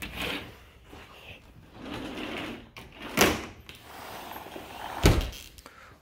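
Indoor knocks and rustles, with two loud sharp thumps about three and five seconds in, the second deeper.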